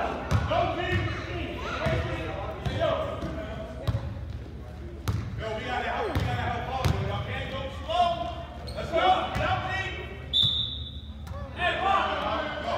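Basketball bouncing on a hardwood gym floor during play, with voices calling out across the hall. About ten seconds in, a referee's whistle blows once, a steady shrill note about a second long.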